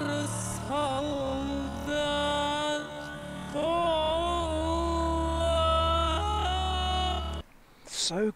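A male singer holds high notes with wide vibrato over a low, steady bass accompaniment, flipping quickly between falsetto and chest voice. The music cuts off suddenly near the end.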